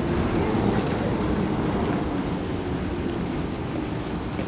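Brévent aerial tramway cabin passing close overhead, its carriage running along the track ropes with a steady low rumble.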